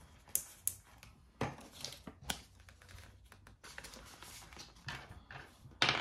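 A clear plastic binder envelope and polymer banknotes being handled: scattered soft crinkles and clicks, with a louder rustle near the end.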